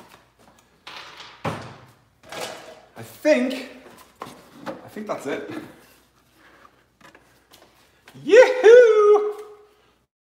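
Knocks and clicks of a plastic air filter housing cover being unclipped and pulled off, mixed with a man's wordless vocal sounds. The loudest of these is a wavering, pitched sound lasting about a second near the end.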